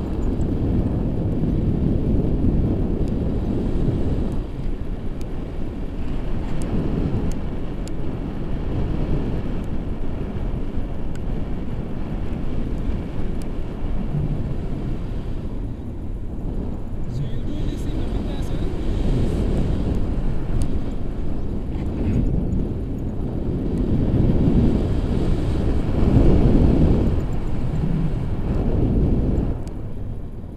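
Wind buffeting the camera microphone in flight on a tandem paraglider: a steady low rumbling rush that swells and eases, loudest a few seconds before the end.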